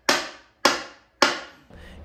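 Wooden mallet handle being jammed into its glued green-wood head with three sharp knocks, about one every half second, each ringing out briefly.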